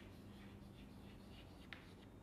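Chalk writing on a chalkboard: faint scratching strokes as a word is written, with a single sharp tap near the end.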